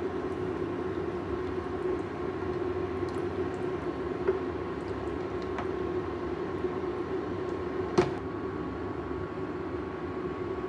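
Udon simmering in broth in a pan on a gas stove: a steady rumble with a faint hum, while long chopsticks stir the noodles. Chopsticks click against the pan twice, the louder click about two seconds before the end.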